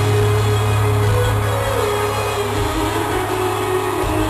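Live rock band playing an instrumental passage in an arena, held chords over a steady, sustained bass note, with no singing.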